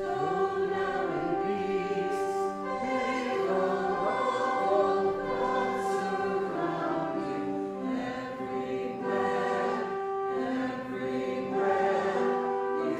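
A group singing a hymn over long held instrumental notes, steady throughout.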